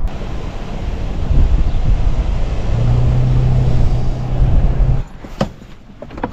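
Road noise and engine hum inside a moving car's cabin, a low rumble joined by a steady engine drone about three seconds in. The noise cuts off abruptly about five seconds in, followed by a couple of sharp clicks.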